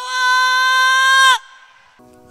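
A woman's voice into a microphone holding one long, high note: the drawn-out end of a called "Hallelujah". It stays on one pitch and cuts off sharply about a second and a half in.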